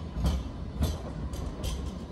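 A Sydney light-rail tram passing close by, a steady low rumble, with a few sharp taps on top.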